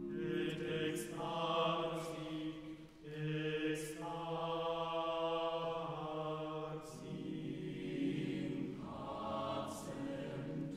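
Mixed chamber choir singing a cappella: long held chords that shift every second or two, with a short break about three seconds in and several hissing 's' consonants.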